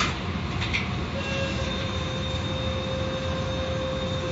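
Automatic car wash machinery running: a steady mechanical rumble and hiss. A steady whine joins in about a second in, with a faint click just before.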